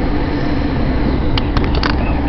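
Steady rumble of an electric commuter train moving off along a station platform, heard from inside the carriage, with a few sharp clicks near the end.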